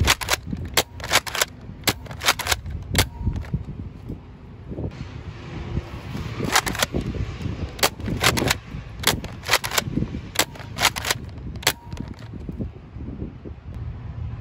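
Nerf Rough Cut spring-powered dart blaster being primed and fired over and over, two darts per shot: clusters of sharp plastic clacks and pops, with a pause of a few seconds in the middle.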